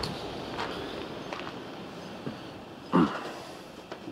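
Quiet background with a few soft steps and clicks, and a short vocal sound about three seconds in.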